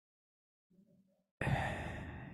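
A sudden loud sigh, breathed out into a handheld microphone about a second and a half in, fading slowly; before it, near silence.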